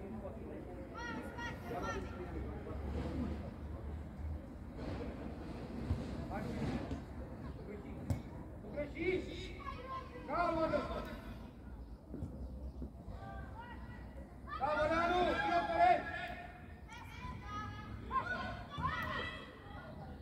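Voices calling out across an outdoor football pitch, on and off throughout, with a louder burst of high-pitched shouting about 15 seconds in, over a steady low rumble.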